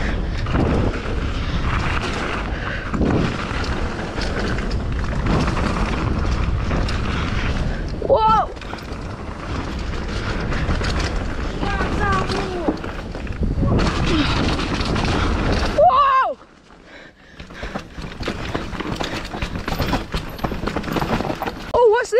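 Mountain bike riding fast down a dirt trail: wind buffeting the handlebar camera's microphone over the rumble of tyres on dirt, with a few short shouted calls. At about 16 s the rumble drops away sharply as the bike slows into the woods.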